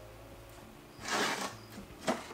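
A short scrape of a thin wooden board sliding over the wooden window sill, about a second in and lasting about half a second.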